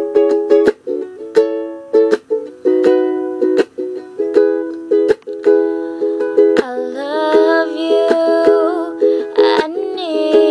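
Ukulele strumming chords in a steady rhythm. About two-thirds of the way through, a girl's singing voice joins over the strumming.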